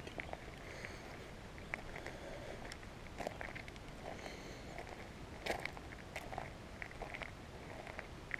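Footsteps on a gravel dirt track: soft, irregular crunches and small clicks of stones underfoot.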